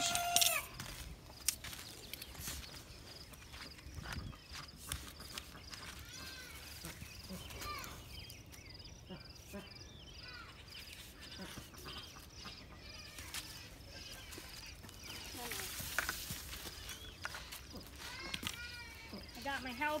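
Faint outdoor background with scattered light clicks and knocks of PVC pipe being handled and fitted, and a few faint distant high calls.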